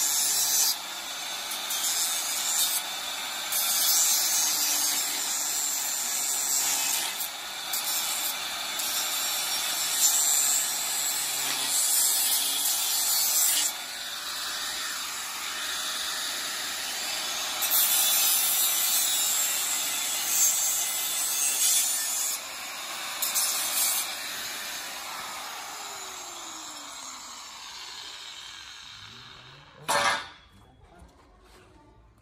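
A small handheld angle grinder abrading a metal pipe, a harsh hiss that swells and eases in stretches as the disc is pressed on and lifted. Near the end it tapers off as the grinder winds down, and a short knock follows.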